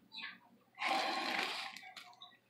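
Breath blown through a drinking straw into a cup to inflate a glove: a breathy rush of air lasting about a second, from just under a second in, after a brief faint hiss.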